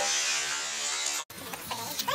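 A steady buzz under a woman's speech, cut off abruptly a little over a second in, after which the sound is quieter.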